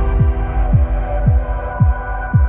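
Background music: a deep kick drum beating steadily about twice a second under held chords.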